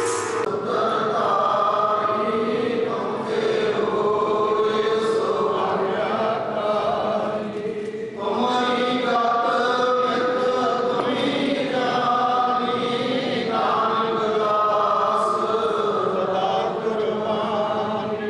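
A man chanting a Sikh prayer into a microphone in long sung phrases, with brief pauses between them. A chimta's metal jingles die away in the first moment.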